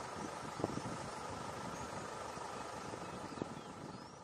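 Steady outdoor ambience from field footage: an even hiss with a low rumble underneath and a faint steady hum, with a few faint high chirps and small ticks.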